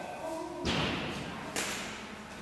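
A dull thud about two-thirds of a second in, then a second, sharper knock at about a second and a half.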